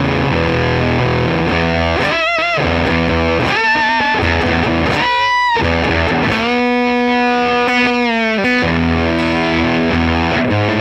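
Electric guitar played through a hand-built Jordan Bosstone fuzz clone with the fuzz knob at halfway and the Strat's bridge humbucker at full volume, into a Dumble-style amp: a fuzzy, sustaining lead line with wavering vibrato on its high notes and one long held note from about six and a half to eight and a half seconds in.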